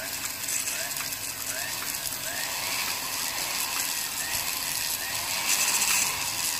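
A handmade bent-angle handpiece on a flexible-shaft rotary tool (bor tuner) running steadily, its spring-sheathed drive shaft and burr spinning, with a steady hissing mechanical noise.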